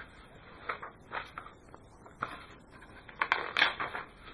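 Pages of a hardcover picture book being turned and handled: a few short papery rustles and taps, busiest in a cluster near the end.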